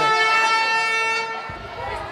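A horn blowing one long steady note that fades out after about a second and a half.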